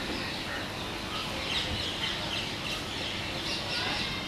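Outdoor ambience: birds chirping over a steady background din, with faint voices in it.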